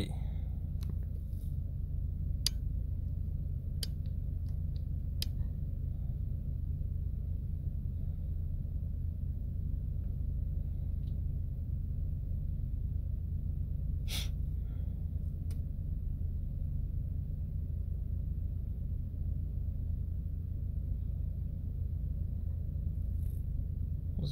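A steady low rumble with a few faint, sharp clicks, three of them evenly spaced in the first seconds and one about midway.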